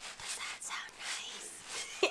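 A foam-soaked Scrub Daddy sponge squeezed in the hand, squelching and crackling with soap bubbles in a run of irregular wet squishes.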